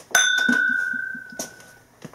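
Two tulip-shaped whiskey glasses clinked together in a toast: one sharp clink that rings on as a clear, steady tone, fading out over about a second and a half.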